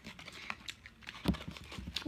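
Paperboard fast-food box being handled and turned over in the hands: a few light taps and clicks, the loudest a little past a second in.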